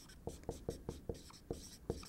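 Dry-erase marker writing on a whiteboard: a quick series of short strokes and taps, several a second.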